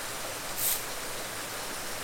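Steady rushing of creek water, with a short high hiss a little over half a second in.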